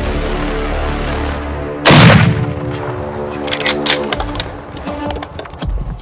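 A single loud rifle shot about two seconds in, dying away within about half a second, over steady background music.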